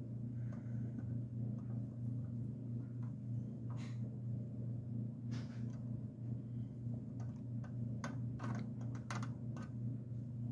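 Light, irregular clicks and scrapes of a small pointed metal tool working at the round metal plate in the end of a wooden lantern, coming quicker in the last couple of seconds. A steady low hum runs underneath.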